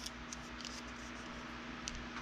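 Quiet room tone with a steady low hum, and a few faint light ticks from hands handling a paper template against a clay sculpture.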